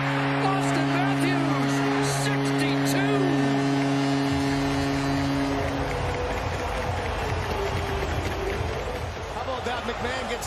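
Arena goal horn sounding one steady low note for about six seconds after a Maple Leafs home goal, over a cheering crowd that keeps cheering after the horn stops.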